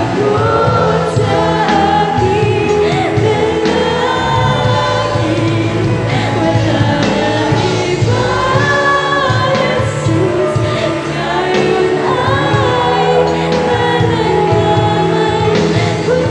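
Youth choir of male and female voices singing a gospel worship song over musical accompaniment, loud and continuous.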